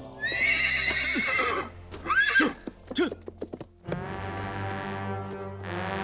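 A horse whinnies loudly, then gives a few shorter calls, with hooves knocking on the ground. About four seconds in, music with long held chords takes over.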